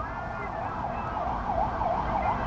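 Emergency-vehicle siren in yelp mode, sweeping quickly up and down about four times a second, over low street-traffic rumble.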